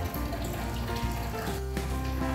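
Soft background music with sustained, held notes over a light hiss.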